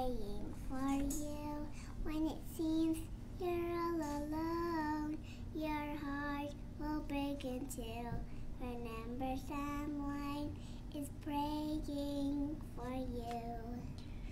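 A young girl singing into a headset microphone, holding each note with short breaks between phrases, over a steady low hum.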